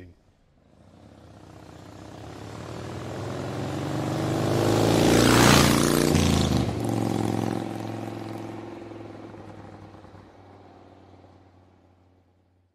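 A vehicle engine sound-effect pass-by under a logo sting. It swells steadily to a peak with a whoosh about five and a half seconds in, then fades away.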